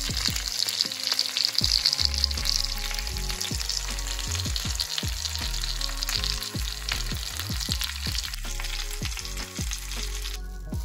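Chicken breasts frying in oil in a pan: a steady sizzle with crackling, strongest in the first half and thinning toward the end.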